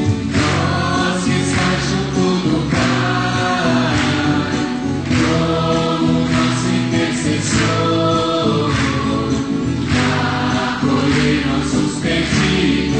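A church choir singing a liturgical hymn with held, sustained notes.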